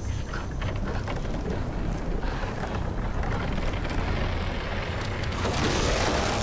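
A TV horror-drama soundtrack: a dense, steady low rumble of eerie sound effects that swells louder near the end.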